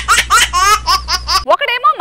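High-pitched, cartoonish laughter sound effect, a quick run of rising 'ha-ha' syllables over a music sting with a bass line; the music cuts off about one and a half seconds in and a woman starts speaking.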